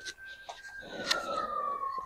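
A distant siren's wail: one long tone that holds steady, then slowly falls in pitch from about a second in. A few light clicks sound over it.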